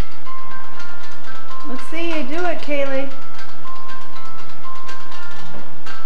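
A simple tinny tune of single high notes, the kind played by an electronic toy or an ice cream truck, plays on without a break. About two seconds in, a young child's voice calls out briefly over it.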